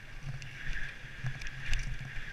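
Mountain bike descending a rough dirt trail, heard from a helmet-mounted camera: a steady rush of tyres on dirt and moving air, with irregular clicks and knocks of the bike rattling over bumps and one louder knock near the end.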